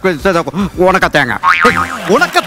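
A man speaking loudly and animatedly in Malayalam, in exaggerated rising-and-falling phrases. Near the end there is a brief high sweep, then a short steady tone.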